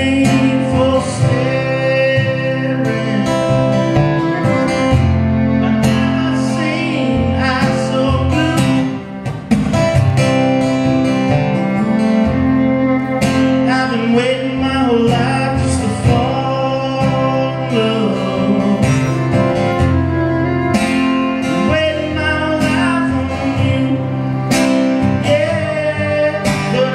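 Live song on three acoustic guitars, strummed and picked together, with a man singing over them. The playing drops away briefly about nine seconds in, then carries on.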